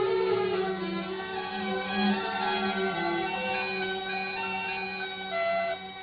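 Instrumental closing passage of an Arabic song, with bowed strings holding long notes. It grows gradually quieter and drops down near the end.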